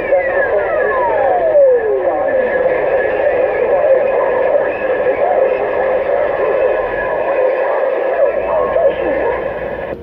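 Voices of distant stations coming in over a Stryker SR-955HP 10-meter radio's speaker, too distorted for words to be made out, under steady whistling tones. A whistle slides steadily down in pitch over the first three seconds or so.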